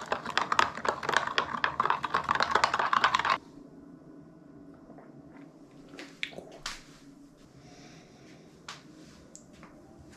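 Metal spoon stirring a drink in a glass, clinking rapidly against the glass for about three seconds, then stopping abruptly; a few faint isolated clicks follow.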